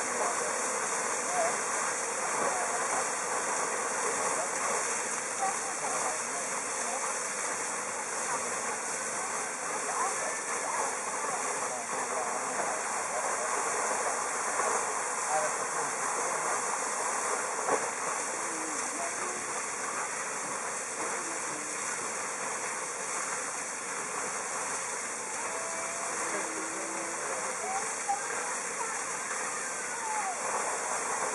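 Geyser fountain's tall water jet shooting up and falling back, a steady rushing, splashing noise of falling water that stays even throughout.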